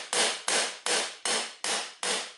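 A tent-peg mallet striking the foot of a Bogen tripod leg about six times in quick, even taps, driving the pulled-out foot back in flush with the lower leg section.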